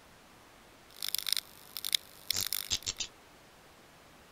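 Glitchy, crackling digital sound effects in three short clusters of rapid snaps between about one and three seconds in, over a faint steady hiss.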